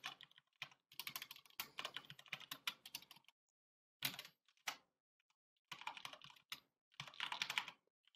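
Faint typing on a computer keyboard: quick runs of key clicks broken by pauses of about a second, as a line of code is typed.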